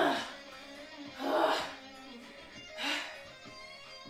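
Background music with guitar, under short bursts of a woman's voice, one of them a breathy "oh" about a second in.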